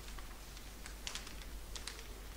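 Light, irregular clicking taps at a desk, about seven in two seconds, several in quick succession near the middle.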